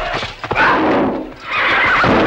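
A horse whinnying loudly twice, each call under a second long, with a short gap between them.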